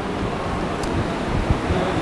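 Steady room background noise, a low hum and hiss, picked up by the lecture microphone, with a faint click just before the middle.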